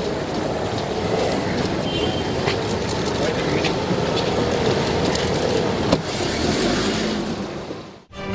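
Noisy press scrum around a car: a dense, steady bed of crowd and street noise with many short sharp clicks, and one loud knock about six seconds in as a car door shuts. It fades out just before the end.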